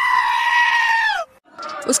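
Goat screaming: one long, loud call that drops in pitch as it ends, from the screaming-goat meme clip edited in as a sound effect.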